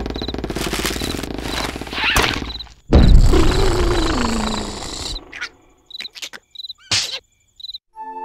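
Cartoon sound effects: a drawn-out pulsing rasp, then a sudden loud blast about three seconds in with a falling groan through it, dying away by the middle. Crickets chirp through the quiet second half, broken by a few small clicks.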